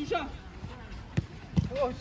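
A football being kicked in quick passes, two sharp thuds a little under half a second apart past the middle, with short shouts from the players.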